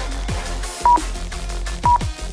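Workout interval timer's countdown beeps: two short, high, single-tone beeps a second apart, marking the last seconds of the exercise interval. They sound over electronic dance music with a steady beat.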